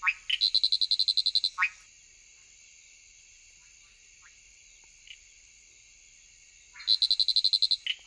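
Male leaf-folding frog giving his advertisement call from a high perch: two bouts of rapid, high clicking pulses, about ten a second, one at the start and one near the end. Each bout opens and closes with a short falling chirp. A steady high insect chorus drones underneath.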